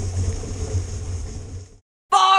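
Wind rumbling on the microphone over a steady high hiss, fading out to silence near the end.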